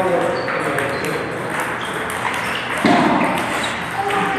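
Table tennis balls clicking off rubber paddles and the tables in quick, uneven succession, with rallies going on at several tables. A louder thud comes about three seconds in.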